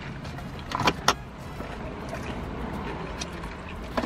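Steady low hum inside a car cabin, with a few short clicks and rustles about a second in from handling food and drinks.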